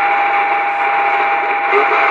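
Two-way radio speaker hissing with static and a steady whistle tone, with faint voices coming through the noise.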